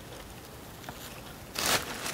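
Faint rustling of musk ox qiviut as the downy fiber is handled and pulled from the hide, with a brief louder burst of noise about one and a half seconds in.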